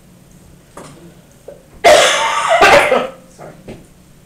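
A person coughing loudly, two harsh coughs in quick succession about two seconds in.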